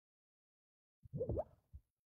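About a second of silence, then a short mouth sound from a woman, a brief murmur lasting under a second.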